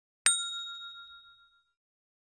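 Notification-bell chime sound effect: one bright ding that rings and fades away over about a second and a half.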